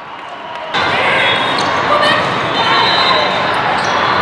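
Echoing gymnasium noise at a volleyball match: many voices talking and calling, with balls bouncing and being hit. It cuts in abruptly under a second in, after a quieter start.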